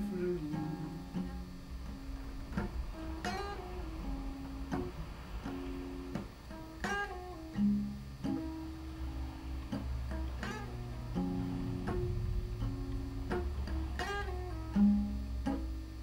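Acoustic guitar played solo in a blues passage: picked notes and short runs ringing, with a few sharper plucked strikes, and no singing.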